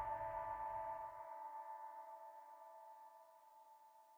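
Closing sustained synth chord of a future bass track, several steady tones fading slowly away; the bass drops out about a second in.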